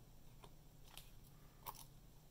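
Near silence with a few faint small clicks, about three, as a tiny antenna cable connector is pressed with a pointed tool onto the antenna terminal of an Intel AX200 M.2 Wi-Fi card.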